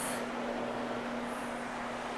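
Rotary SETT carpet-cleaning machine running steadily, its motor giving a constant hum over an even hiss as the microfibre pad scrubs the carpet.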